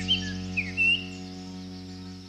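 Several short bird chirps in the first second, over a held background music chord that fades away near the end.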